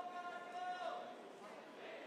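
A single voice holds one long, high, steady note that ends about a second in, heard faintly over the murmur of a large hall.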